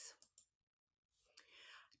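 Near silence with a few faint computer-mouse clicks as the page of an on-screen book is turned, then a faint breath just before speech.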